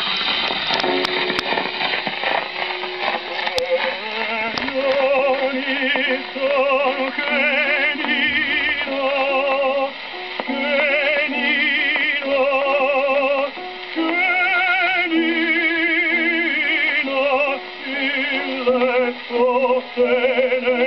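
An acoustic horn gramophone plays an early Fonotipia 78 rpm sample disc from about 1904. After a few seconds of needle surface noise and the accompaniment's opening, an operatic tenor voice enters about four seconds in, singing with a wide vibrato over steady record hiss and crackle.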